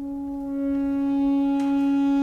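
Opera orchestra holding one long, steady wind-instrument note that swells slightly in loudness.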